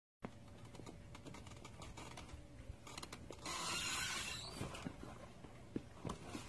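Many light clicks, knocks and creaks from the moving parts of a homemade walking robot costume, with a louder burst of hissing noise from about three and a half to four and a half seconds in.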